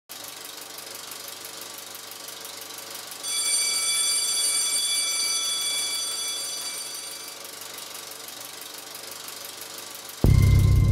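Film projector sound effect: a rapid, even mechanical clicking throughout. About three seconds in, a bell-like chime sounds and rings away over about four seconds.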